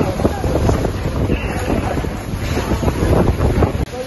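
Fire hose jets spraying water into a burning building: a loud, steady rush with dense crackling, and wind buffeting the microphone. The sound drops out briefly just before the end.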